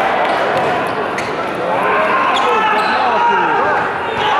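Indoor volleyball court: players' shoes squeak repeatedly on the sports floor over a steady murmur of crowd chatter in the hall, with a few sharp knocks.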